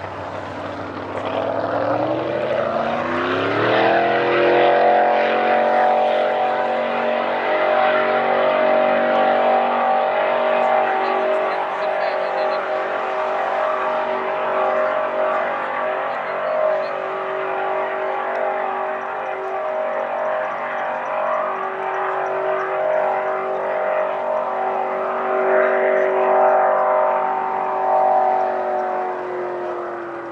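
750 hp race boat engine revving up hard over the first few seconds, then held at a steady high pitch at full throttle. The pitch sags slightly near the end as it fades.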